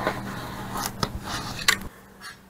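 A knife slicing through a paper-faced fiberglass insulation batt pressed flat under a framing square: a rough scraping tear with a few sharp ticks, over a low steady hum. The sound stops abruptly near the end.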